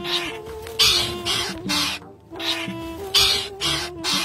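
About seven short, harsh squawking calls from caged birds, coming at uneven intervals, over background music with long held notes.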